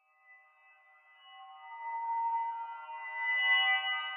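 Electronic music: a chord of steady, sustained high tones that fades in from silence and swells, loudest near the end.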